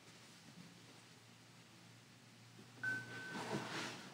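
Quiet room tone, then about three seconds in a mat-mounted print is set onto the display stand: a brief sliding scrape of the board, with a short thin squeak.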